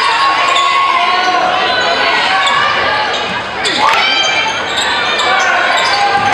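Live sound of a basketball game in a gymnasium: the ball bouncing on the court amid the voices of players and spectators, echoing in the large hall.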